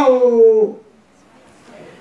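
A man's preaching voice draws out the last syllable of a word, its pitch falling, then breaks off for about a second's pause with only faint room sound.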